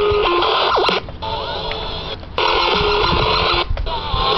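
Sony boombox radio being tuned across stations: short snatches of broadcast music and voice, with three brief drop-outs between them.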